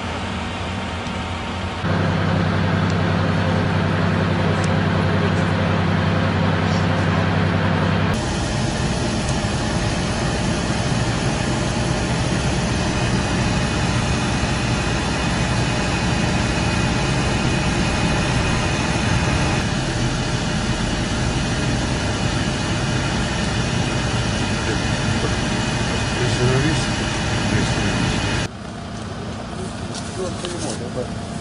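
Motor vehicle engines running steadily, in several stretches that change abruptly where the clips are cut together. A louder steady engine hum runs from about two seconds in to about eight seconds.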